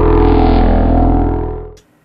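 A short musical logo sting: a deep, droning bass chord with higher tones above it that swells in and fades out shortly before the end.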